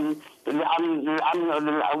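Only speech: a man talking in Arabic over a narrow, phone-quality line, with a brief pause near the start.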